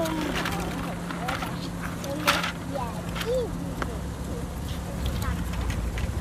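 Light clicks and knocks of a plastic toy combine harvester being handled, over a steady low hum, with one sharp click a little over two seconds in.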